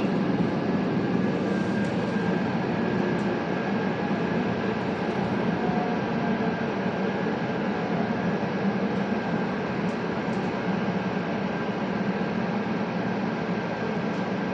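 Steady interior noise of an RTD N Line electric commuter rail car: an even hum and rush of equipment and ventilation with a faint steady whine, without wheel clatter.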